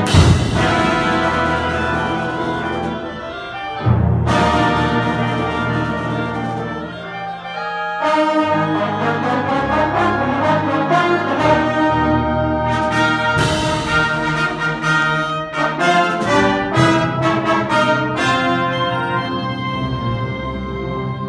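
A concert band of brass and woodwinds playing, with the brass to the fore. Loud full-band accents hit at the start and again about four, eight and thirteen seconds in.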